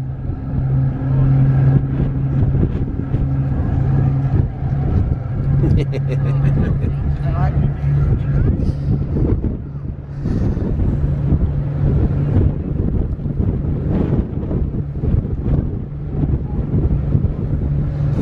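Steady low drone of a car ferry's engines under way, with wind on the microphone and passengers' voices; a laugh about six seconds in.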